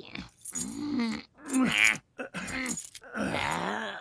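A cartoon character's voice making about four wordless vocal sounds in a row, each bending up and down in pitch, with short breaks between.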